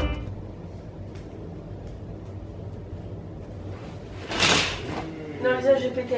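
Curtain drawn along its rail: one brief swish about four and a half seconds in, after a few seconds of quiet room tone.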